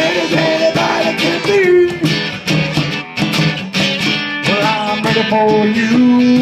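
Acoustic guitar strumming a blues groove between sung lines, with bongos tapping along.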